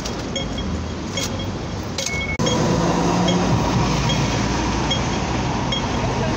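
City street traffic noise with a pedestrian crossing signal beeping about twice a second. About two seconds in, the traffic noise jumps abruptly louder and a low vehicle engine hum joins it.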